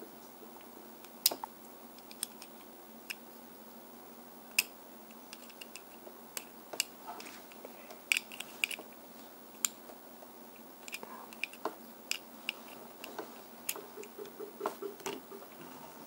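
Scattered small, sharp clicks and taps of a hand tool against the axles and wheels of a vintage Hot Wheels Redline die-cast car as an axle is bent to straighten its steering.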